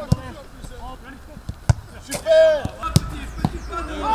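Footballs struck hard in shooting practice: a few sharp thuds of boots hitting the ball, one just after the start, one just under two seconds in and one about three seconds in, followed by a lighter knock. A player's loud shout comes between them, with chatter around.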